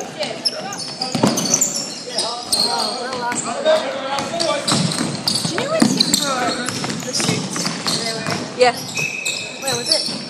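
Basketball being dribbled on a wooden gym court during a game, with short high squeaks of sneakers as players run.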